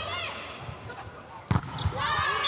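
A volleyball struck hard once, a sharp smack about one and a half seconds in, followed by a softer knock. Court shoes squeak on the floor near the start.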